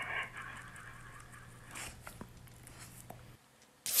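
Faint wet mouthing and nibbling sounds of a dog chewing at a person's face, heard quietly through the clip's audio over a low hum that cuts off near the end.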